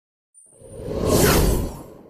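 Whoosh sound effect of an animated logo intro, swelling up from about half a second in and dying away near the end, with a low rumble beneath.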